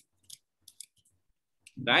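A few faint, separate keystrokes on a computer keyboard as a short piece of text is typed, spread over about a second and a half. A man's voice starts near the end.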